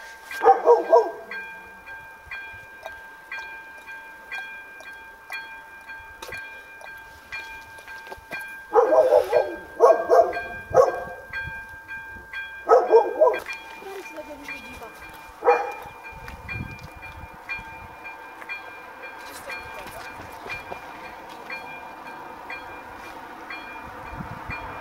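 A level-crossing warning bell rings steadily, striking about twice a second. A dog barks in several short bursts near the start and again in a cluster about midway through.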